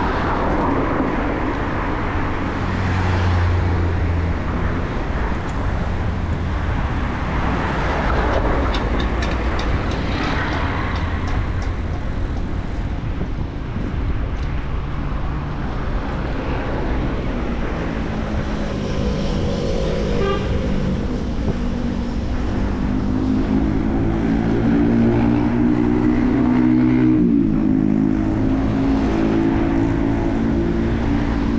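Wind rushing over a bicycle-mounted action camera's microphone, with road traffic around it. In the second half a passing motor vehicle's engine hum rises and holds, then breaks off sharply near the end.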